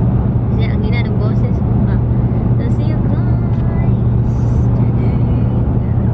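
Steady low drone of road and engine noise inside a moving car's cabin, with brief snatches of faint talk.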